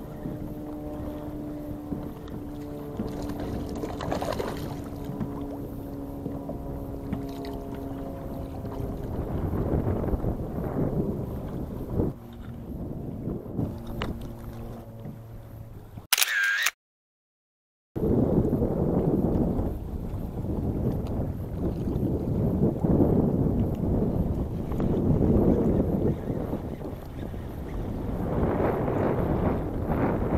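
Wind on the microphone and water washing against a kayak hull, swelling and easing every couple of seconds in the second half. Earlier, several steady humming tones sound together and drop out one by one, and a short break to silence comes just past the middle.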